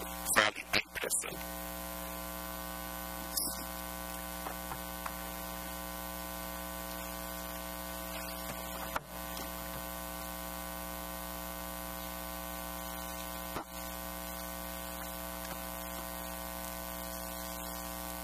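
Steady electrical mains hum with a buzz of many overtones, carried on the sound system's feed, with a short click about three and a half seconds in.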